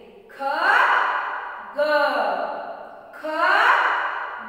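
A woman's voice, drawn out in three long phrases whose pitch glides up and then falls away, as when letter sounds or a rhyme are chanted aloud for young children.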